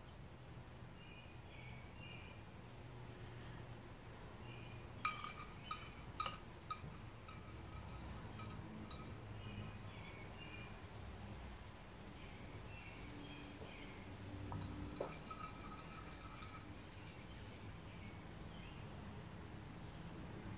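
Faint background with short, repeated distant bird calls, and a few light clicks about five to seven seconds in.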